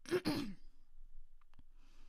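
A woman's breathy sigh, with a little voice in it, fading out within about half a second; a faint click follows about a second and a half in.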